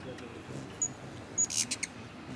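Bird chirping: two short high pips, then a quick run of high chirps about one and a half seconds in, over faint distant voices.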